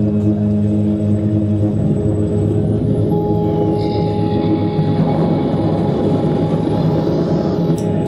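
Electronic music played live on a laptop and synthesizer: a steady drone of layered held tones over a low rumble, with a thin high tone climbing slowly about three seconds in.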